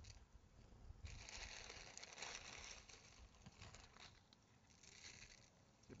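Faint crackling as dry fideo (thin vermicelli) is broken up by hand and drops into a frying pan of hot oil. The crackle is strongest from about a second in to three seconds, with a brief spell again near the end.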